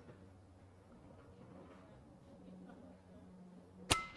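Quiet background with a low steady hum. Near the end comes one sharp shot from an Evanix Rex Ibex .22 PCP air rifle fitted with a silencer.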